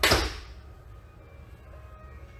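A sudden sharp swish and thud as a tai chi practitioner releases a forceful strike, dying away within about half a second, over quiet background music.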